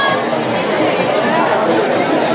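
Crowd chatter: many voices talking over one another at a steady, busy level.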